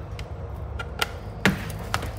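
A few separate sharp clicks and taps, the loudest about one and a half seconds in, as the FNIRSI SWM-10 handheld battery spot welder is handled and switched on.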